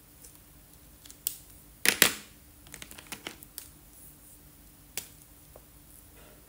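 Sharp plastic clicks and light clatter as felt-tip markers are swapped: caps pulled off and snapped on, and pens set down among others. A loud double click about two seconds in, then a quick run of lighter ticks and one more click about five seconds in.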